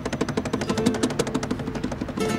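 Acoustic guitar strummed fast with cajón beats, a quick, even, driving rhythm of chord strokes.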